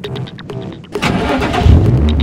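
Nissan 350Z's 3.5-litre V6 being started: a second of starter cranking about a second in, then the engine catches loudly and runs with a steady low note.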